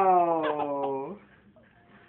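A man's drawn-out 'owww' of play-acted pain, sliding down in pitch and breaking off about a second in.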